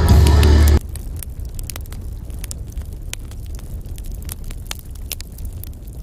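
Live norteño band music, with the deep bass steady, that cuts off abruptly about a second in. A low rumble with scattered sharp clicks and crackles follows.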